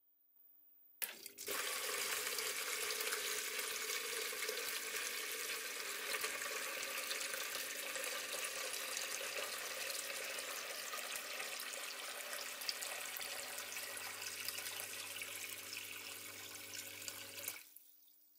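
A small submersible water pump switches on about a second in and pours a steady stream of water from a hose into a plastic bucket, splashing continuously with a faint low hum. It cuts off abruptly near the end as the water reaches the level probes at the top: the automatic level controller switching the pump off at full level.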